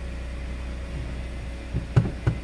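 2014 Hyundai Santa Fe's 2.4-litre four-cylinder engine idling in neutral, heard from inside the cabin as a steady low hum. Two light clicks come near the end.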